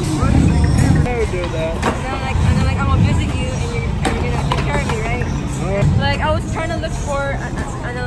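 Busy city street at night: several people talking over a steady low traffic rumble, with a few sharp clacks about two and four seconds in.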